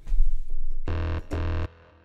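Deep house bass sound on the VPS Avenger software synthesizer: a deep low note at the start, then two short notes of the same pitch about half a second apart, cut off abruptly.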